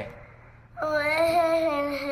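A young child's voice holding one long, drawn-out syllable in a sing-song spelling chant. It starts after a short pause, about three-quarters of a second in, and stays at a steady pitch.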